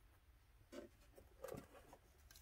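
Faint handling noise: two brief, soft rustling scrapes, the first about a second in and the second half a second later, as a hand works small wooden craft strips into a dollhouse wall.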